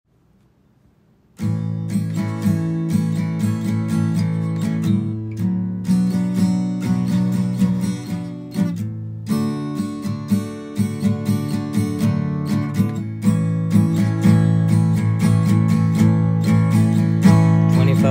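Acoustic guitar strumming a repeating A–Bm–D–A chord progression in a down, down-up-down strumming pattern. It comes in about a second and a half in.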